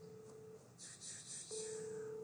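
A steady mid-pitched electronic tone that sounds for about a second at a time: it stops just after the start and comes back about a second and a half in. A short hiss falls in the gap between the two.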